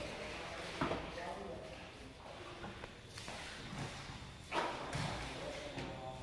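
Faint, distant voices echoing in a large hall, with a few light knocks.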